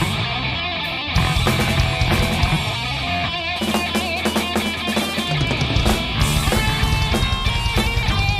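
Heavy metal band playing live: distorted electric guitars, bass guitar and drum kit in an instrumental passage with no singing. A little over three seconds in, the low end thins out for about two seconds, then the full band comes back in.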